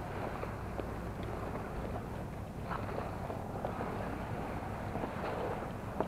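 Steady low rumble of wind on the microphone, with a few faint, scattered light taps.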